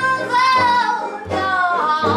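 A woman singing a blues melody live, holding one long note and then a shorter falling phrase, over banjo, acoustic guitar and upright bass.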